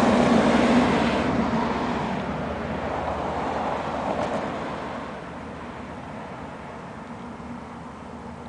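Hawker Siddeley 748 turboprop airliner's twin Rolls-Royce Dart engines at takeoff power as it climbs away just after liftoff. The engine noise fades steadily as it recedes, dropping off further about five seconds in.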